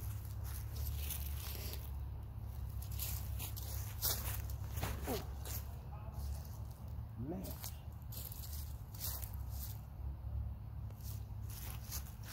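Open-air ambience: a steady low rumble with scattered faint clicks, and two brief faint voice-like sounds about five and seven seconds in.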